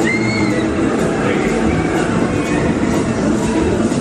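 Fairground thrill ride running with riders aboard: a loud, steady din of ride machinery and voices, with a brief high-pitched shriek right at the start.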